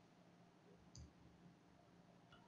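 A single short click from computer input about a second in, against near-silent room tone.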